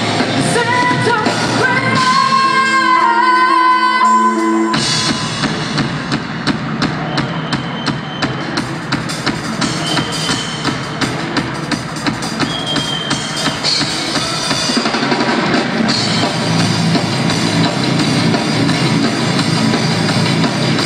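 Live rock band: a woman singing over sparse backing, then about five seconds in the drum kit and the rest of the band come in, the drums keeping a steady beat.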